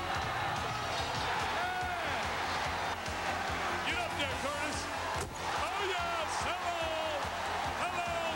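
Music with vocals mixed with a loud, cheering crowd in a basketball arena.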